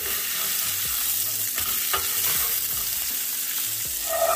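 Bone-in ribeye steak sizzling steadily in its own rendered fat in a hot nonstick aluminum pan, with no oil added. A few light taps sound as silicone-tipped tongs lift the steak.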